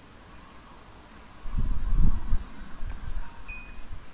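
Low rumbling of wind on the phone's microphone, rising suddenly about a second and a half in and easing off after about a second. A short high beep sounds near the end.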